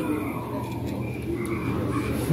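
Low, rumbling ambient sound effects of a dark haunted walk-through exhibit.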